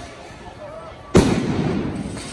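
A single loud explosive bang about a second in, followed by a long rolling echo.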